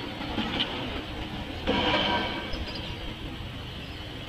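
A train running on the tracks: a steady rail noise, with a brief louder burst about halfway through.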